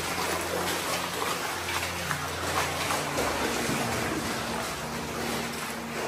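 Water splashing and sloshing under the feet of people wading through a shallow cave stream, over a steady rush of flowing water.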